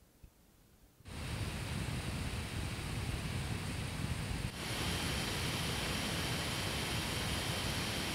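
Lenovo ThinkPad laptop cooling fan at its exhaust vent: nearly silent for about the first second with the fan switched off, then a steady rush of air at fan level 7. About four and a half seconds in it steps up a little louder to full speed (level 64), with a faint steady high whine added.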